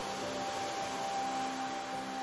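Quiet ambient meditation music: a few soft tones held steady over a faint hiss.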